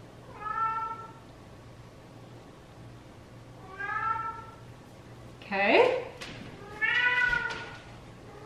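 A house cat meowing four times, a few seconds apart. The third meow rises steeply in pitch and is the loudest.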